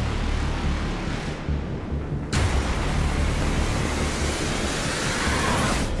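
Cinematic intro sound design over music: a dense rumbling wash with deep bass, a sudden hit about two seconds in right after the highs briefly drop away, then a rising swell near the end.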